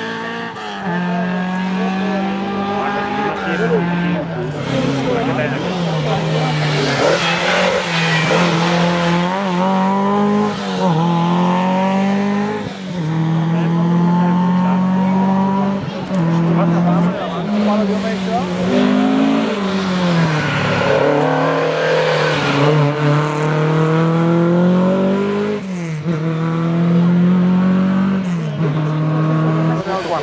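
Historic rally car's engine revving hard under full acceleration up a run of hairpins. Its pitch climbs and drops back again and again as it changes gear and lifts off for the bends.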